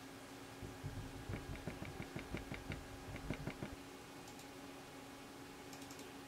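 Faint small clicks and taps, a few a second for about three seconds: a stick scraping and tapping wet pigment out of a plastic mixing palette into a compact pan. Then faint room tone with a steady low hum.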